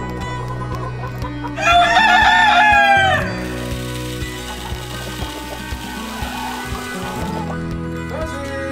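A rooster crows once, loud, starting about one and a half seconds in, lasting about a second and a half and falling in pitch at the end. Right after, feed pellets pour from a metal scoop into a plastic chicken feeder, a steady hiss for about four seconds.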